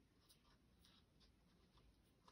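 Near silence, with a few faint rustles and light ticks from hands handling and turning over a suede pump.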